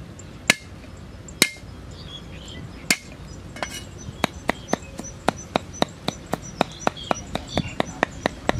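Knife chopping garlic on a round wooden cutting board. Three separate hard strikes come in the first three seconds, then steady rapid chopping at about four strokes a second from about four seconds in.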